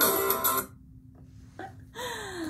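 Piano music with a rhythmic backing accompaniment, cutting off abruptly less than a second in, leaving only a faint low hum.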